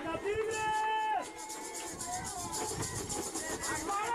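Distant voices of people calling out across an outdoor field, with one drawn-out call that drops off about a second in, then fainter calls over a steady background hum of the surroundings.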